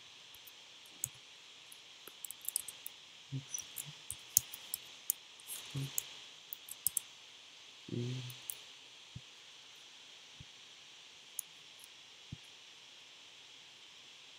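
Computer keyboard typing in quiet, irregular bursts of sharp key clicks for the first several seconds, followed by a few widely spaced single clicks.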